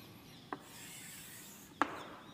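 Chalk scraping faintly on a chalkboard as straight lines are drawn, with two short clicks, one about half a second in and one near the end.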